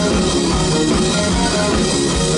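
Rock band playing live and loud: drum kit, electric guitars, bass guitar and keyboards together, with a steady beat under held guitar notes.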